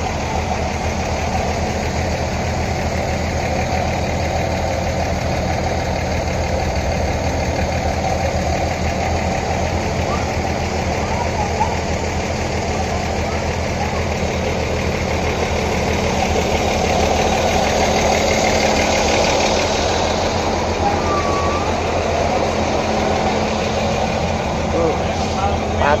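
Diesel engine of a Hino bus idling steadily, a low, even rumble, with voices in the background.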